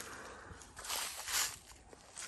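Quiet footsteps through dry fallen leaves, a soft rustling crunch strongest about a second in.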